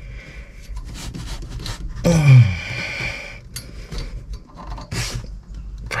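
Fingers working a small nut onto the threaded rod of a tractor's clutch cable linkage in a cramped space: faint rubbing and a few small metallic clicks. About two seconds in, a man makes a short wordless vocal sound that falls in pitch, the loudest sound here.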